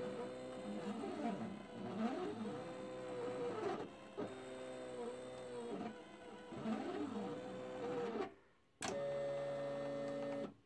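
Silhouette electronic cutting machine cutting cardstock: its motors whine in arcs that rise and fall in pitch as the blade carriage and mat move along the cut lines. About 8 seconds in the whining stops, there is a click, and a steady one-pitch motor hum follows as the cut finishes.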